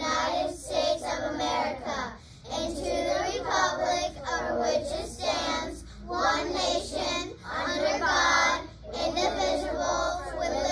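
A class of young children reciting the Pledge of Allegiance together in unison, phrase by phrase, with short breaks between phrases.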